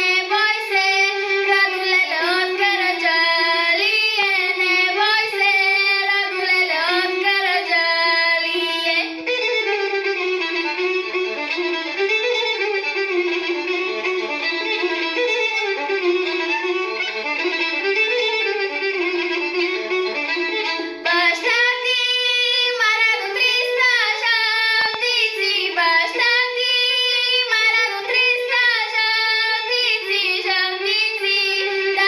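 A girl singing a Bulgarian folk song. About nine seconds in, her voice gives way to an instrumental interlude, and she resumes singing about twelve seconds later.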